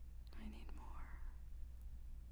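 A woman's soft whisper: one short breathy sound of under a second, shortly after the start, over a steady low hum.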